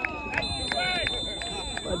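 Spectators' voices talking on the sideline of an outdoor football match, with a steady high-pitched tone that comes in about half a second in and holds.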